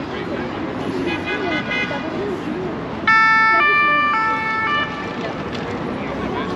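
Two-tone emergency-vehicle siren alternating between a low and a high pitch about every half second: faint about a second in, then loud from about halfway through for nearly two seconds, cutting off abruptly.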